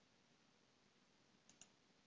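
Near silence with two faint computer mouse clicks in quick succession about one and a half seconds in.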